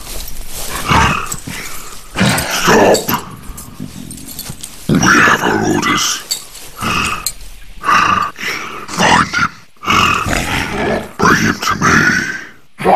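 Orc characters speaking in deep, creature-like voices, in short bursts of a line or two with pauses between.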